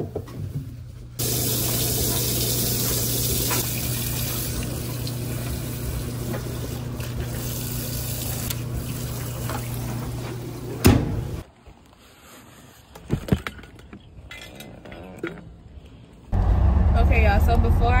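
Top-loading washing machine filling with water: a steady rush of water into the drum with a low steady hum. About eleven seconds in there is a clunk, and the sound becomes much quieter.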